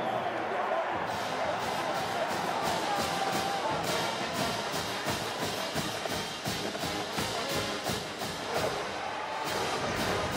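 Marching band brass and drums playing over stadium crowd noise after a touchdown, with steady drum strokes from about four seconds in.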